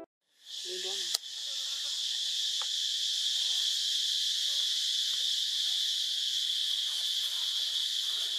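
Steady, high-pitched insect chorus that comes in just after the start and holds level throughout, with a single short click about a second in.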